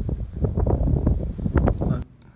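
Wind buffeting a phone's microphone, a loud, gusting low rumble that stops abruptly at the end.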